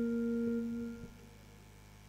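A single steady held musical note, pure and unwavering in pitch, that stops about a second in.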